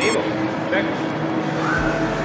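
Supermarket room noise: a steady din and hum with faint, indistinct voices, and the end of a high squealing voice right at the start.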